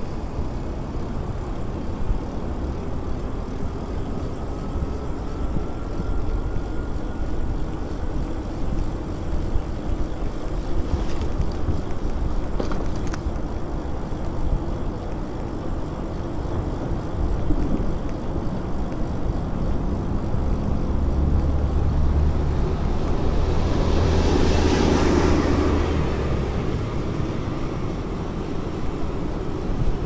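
Wind rumbling on the microphone and steady tyre noise from an e-bike riding along a paved path. Near the end, a louder swell of passing vehicle noise rises and fades.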